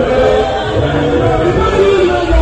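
Mixed church choir of men and women singing in harmony into microphones, holding notes together.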